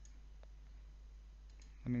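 A few faint computer mouse clicks, spaced out, over a low steady hum.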